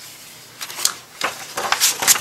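A picture book's paper page being turned by hand: a few short rustles and swishes of paper in the second half, the last the loudest.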